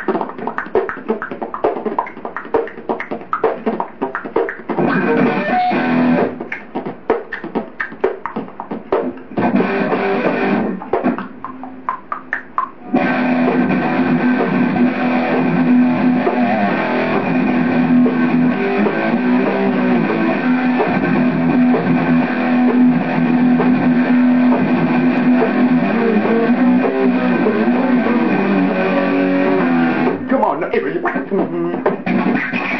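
Guitar playing: about 13 seconds of choppy, rhythmic stop-start playing with short gaps, then a dense, continuous passage that holds a steady low note under the strumming.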